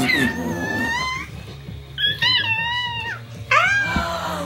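A baby squealing with delight: three long, high-pitched squeals that bend up and down in pitch.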